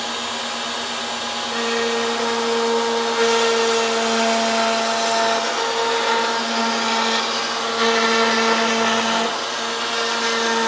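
Table-mounted router running steadily; about a second and a half in, its quarter-inch V-groove bit starts cutting a shallow drip groove along a hardwood board fed past it, and the sound grows louder and higher with small dips as the board moves on.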